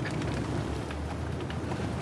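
Steady outdoor background noise: a low rumble with a faint even hiss over it, with no distinct events.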